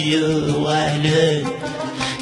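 Kabyle song: a voice singing long held notes over the accompaniment.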